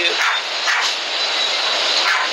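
Ocean waves washing in, a steady rushing surf heard through a phone's microphone.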